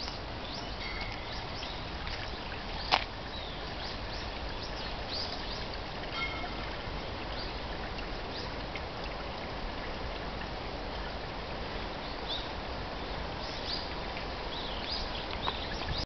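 Outdoor ambience of small birds chirping on and off over a steady hiss, with one sharp click about three seconds in.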